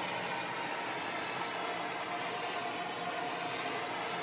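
Handheld gas blowtorch burning steadily, a constant hiss of the flame as it scorches the grain of a pine board.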